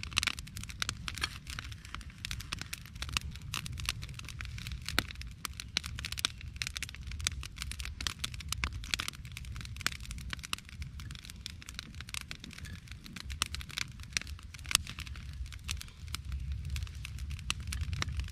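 Small wood campfire crackling, with frequent irregular pops and snaps over a steady low rumble.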